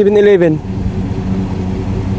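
Passenger van's engine idling, a steady low hum. A man's voice stops about half a second in, leaving the idle on its own.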